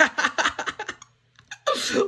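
A man laughing in quick, breathy bursts for about a second, then a short pause before the laughter picks up again near the end.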